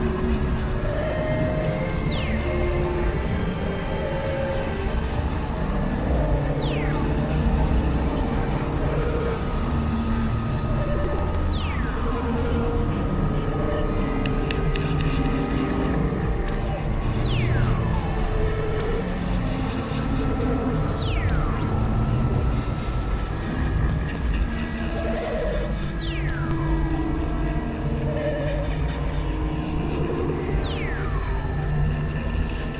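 Experimental electronic drone music from synthesizers. A dense low rumble sits under thin, high squealing tones that hold for a few seconds and then swoop steeply downward, repeating again and again.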